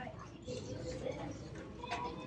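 Faint store background: distant voices and low murmur, with a short rustle or click near the end.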